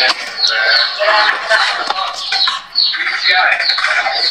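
Indistinct voices talking, with music playing in the background.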